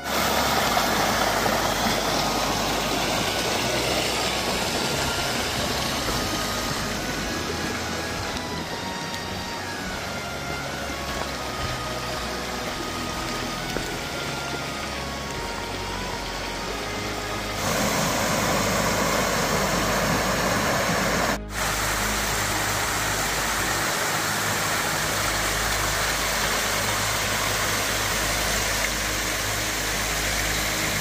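Small mountain creek splashing over rocks and little cascades, a steady rushing of water that shifts in level as the shots change, with a brief dropout about 21 seconds in. Faint background music sits underneath.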